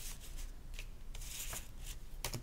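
Paper game cards being handled on a tabletop: several brief, faint rustles and taps of card stock as cards are gathered up and squared in the hand.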